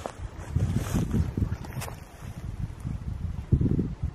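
Wind buffeting a handheld camera's microphone outdoors: an uneven low rumble in gusts. There is one brief click about two seconds in.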